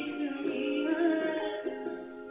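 A male vocalist singing a Hindi song in long held notes over instrumental backing.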